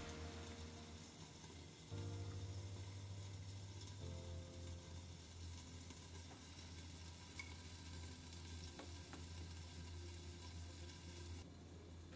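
Quiet, steady sizzle of food cooking on a gas hob, with wooden chopsticks stirring egg drop soup in a small enamel saucepan.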